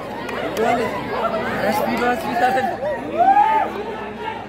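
Several voices close by talking and calling out over one another: spectators' chatter at a football match, loudest a little past three seconds in.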